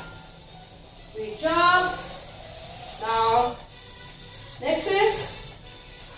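Three short phrases from a voice over faint background music.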